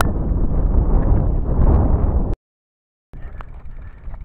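Wind buffeting a handheld action camera's microphone: a loud, low rumble that cuts off abruptly about two seconds in to dead silence for under a second, then returns as a softer rustle with a few light clicks.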